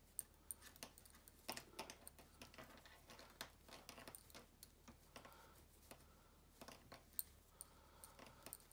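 Faint, irregular clicking of knitting needles and soft yarn handling as stitches are knitted one by one.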